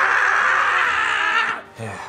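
A man's long drawn-out scream of pain, as from a hammer blow, cutting off about one and a half seconds in.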